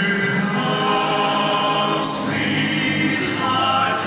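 Male vocal quartet singing in harmony into microphones, several voices holding chords together.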